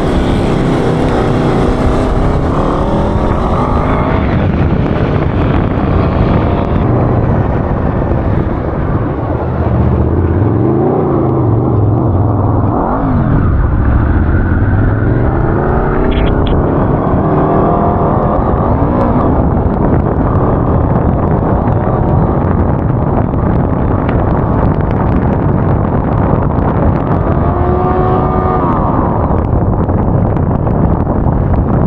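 Homemade off-road buggy's engine running hard as it drives over dirt, its pitch rising and falling with the throttle.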